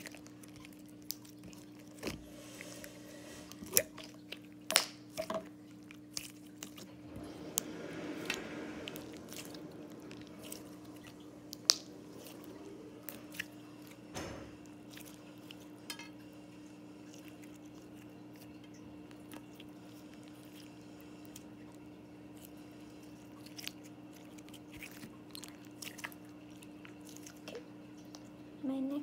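White slime being opened and worked in the hands, giving scattered sticky clicks, pops and crackles, with a few sharper pops a little before 4 s, near 5 s and near 12 s and a denser squishing stretch around 8 s.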